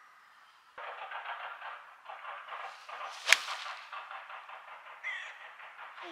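A six-iron striking a golf ball from the rough: one sharp crack about three seconds in. Under it runs a steady rustling noise that begins just under a second in.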